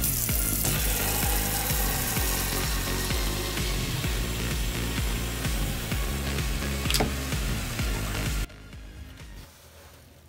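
Tap water running hard into a plastic mop bucket and churning up foam, with background music and a steady bass underneath. The water noise starts suddenly, and both it and the music cut off about eight and a half seconds in.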